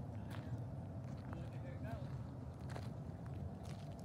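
Low, steady rumble of a distant jet airliner taking off, with a few light clicks and faint voices over it.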